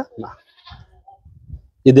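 A goat giving a short, faint bleat in a lull between men's voices.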